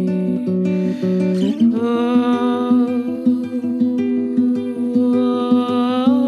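Fingerpicked nylon-string classical guitar playing a repeating pattern of plucked notes. About a second and a half in, a wordless vocal hum joins, gliding up into a long held note over the picking.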